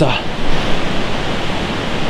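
A steady, even rushing noise, unbroken throughout.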